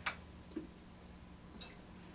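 A few small clicks and taps as hands handle things on a sculpting stand: one click at the start, a faint tap, and a sharper, hissy tick about a second and a half in, over a low steady hum.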